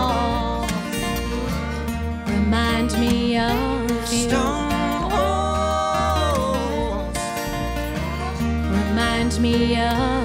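A country-folk band playing an instrumental break: long held notes that slide and bend between pitches, in the manner of a pedal steel guitar, over upright bass, accordion and acoustic guitar.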